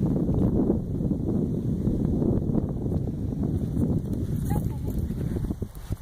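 Wind buffeting the microphone, making a steady low rumble.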